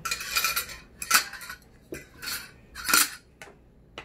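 Metal spoon and fork scraping and clinking against a glass salad bowl, in several short bursts.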